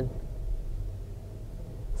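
Mercedes-Benz GL550's 4.7-litre twin-turbo V8 idling, a low steady hum heard from inside the cabin.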